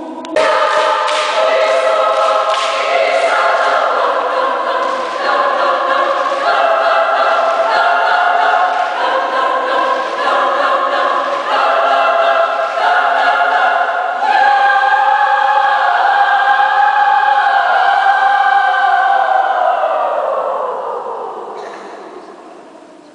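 A choir singing, coming in loudly just after the start with sustained chords that move in steps; about fourteen seconds in it swells onto a long held chord that fades away near the end, with the reverberation of a church.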